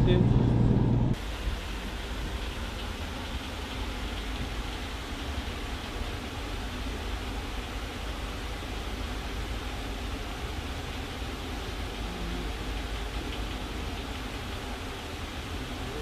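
Loud wind on an open ferry deck cuts off about a second in. It gives way to the steady, even running noise of a passenger ferry, heard inside its cabin.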